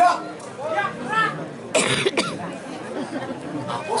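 A man's voice talking in short phrases, with a brief sharp noise a little under two seconds in.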